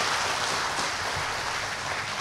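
Audience applauding, an even clatter of clapping that tapers off slightly near the end.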